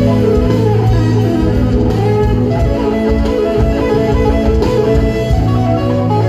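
Live rock band playing through a PA: electric guitar over bass guitar, keyboard and drum kit, at a loud, steady level with held bass notes.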